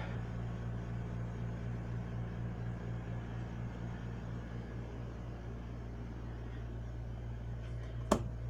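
Steady low electrical hum with a soft background rush from household appliances running in a small room.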